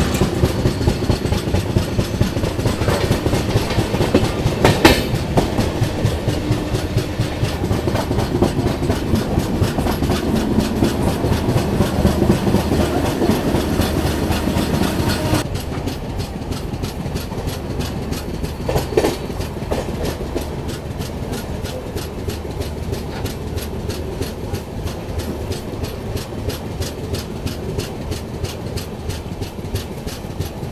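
Jan Shatabdi Express passenger train running along the track, heard from the open door of a coach. A steady rumble of wheels on rail carries a rapid clickety-clack. About halfway through the sound turns duller and a little quieter.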